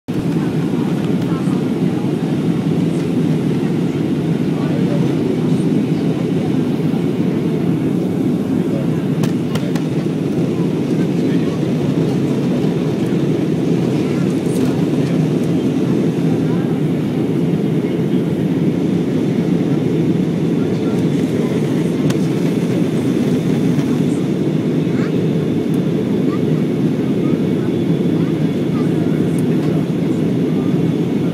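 Airbus A320 cabin noise in flight: the steady, low rumble of engine and airflow noise heard inside the passenger cabin, even in level throughout.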